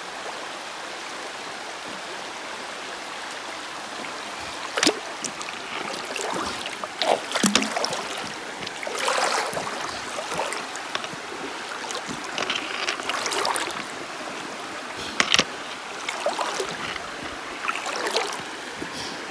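Shallow river flowing over rocks, a steady rush of water. From about five seconds in, irregular splashing and sloshing of feet wading through the knee-deep water, with a few louder splashes.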